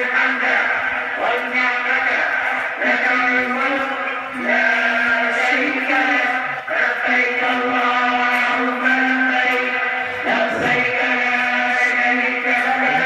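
Religious chanting by a voice in long held notes, each phrase breaking off after a few seconds and starting again.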